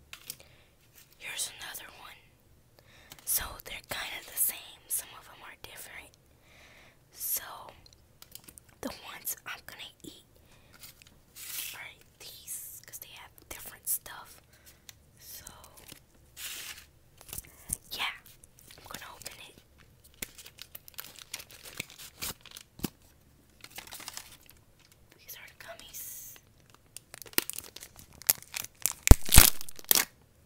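A small cardboard candy box and a plastic wrapper handled close to the microphone, torn open and crinkled in short irregular bursts, loudest just before the end.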